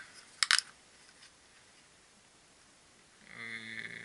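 Two or three sharp plastic clicks in quick succession about half a second in, from a small plastic LED headlamp being handled. A short hummed hesitation sound from a man's voice follows near the end.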